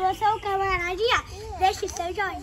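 Young children's high-pitched voices talking and calling out, one voice holding a drawn-out call in the first second.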